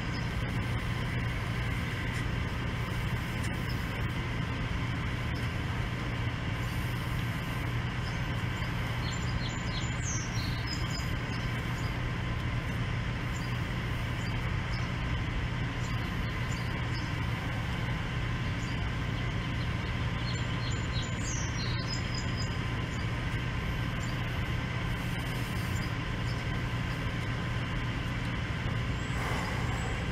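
A steady mechanical hum: a constant low drone with a few fixed higher tones and no change in level. A few brief high chirps are heard over it.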